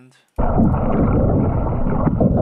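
Loud, muffled underwater rumble and water noise from an action camera's underwater recording of a breaststroke swimmer, starting abruptly a moment in as the clip plays.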